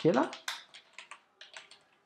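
Quick typing on a computer keyboard: about nine or ten keystrokes in a little over a second, then the typing stops.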